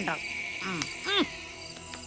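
Crickets chirping steadily as a background night ambience, with a few short spoken sounds over it.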